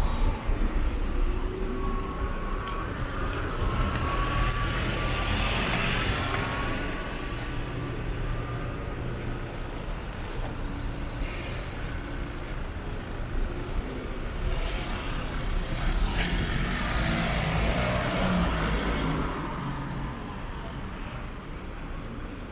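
City street traffic: a steady low rumble of car engines and tyres, swelling as vehicles pass about five seconds in and again around seventeen seconds in. A faint rising whine runs through the first several seconds.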